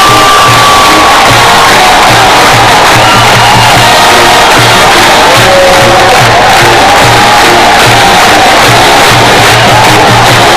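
A marching band plays, with drums keeping a steady beat, over a large crowd of students cheering and shouting. The whole mix is loud.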